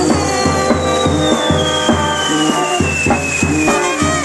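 Brass wind band playing: trumpet, saxophone and baritone horn over a steady bass-drum and cymbal beat. A high whistle slowly falls in pitch through it.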